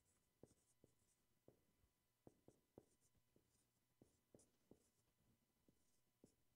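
Faint marker writing on a whiteboard: short taps of the tip and quiet high squeaks of the strokes as words are written out.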